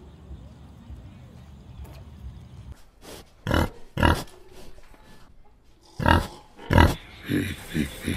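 Piglet giving four loud short calls, in two pairs about three and a half and six seconds in. Before them a low steady rumble; near the end a quicker run of short sounds.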